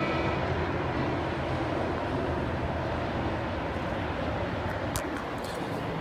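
Steady outdoor urban background noise heard from a balcony, an even hiss and rumble with no distinct events, and a few faint clicks near the end.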